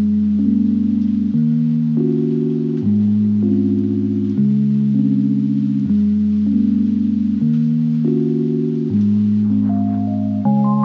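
Background music: sustained, chime-like chords that change about every second and a half.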